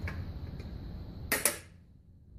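Two sharp metallic clicks in quick succession, about one and a half seconds in, over a low hum: the clamp on the capsule polisher's stainless-steel case being snapped shut as the case is fitted back on.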